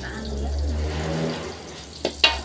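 Spice paste sizzling in oil in a wok as it is stirred with a metal spatula, over a steady low rumble that eases off near the end.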